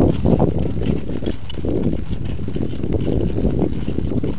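Several horses walking on a gravel trail: an irregular run of hoofbeats clip-clopping and crunching on the stones.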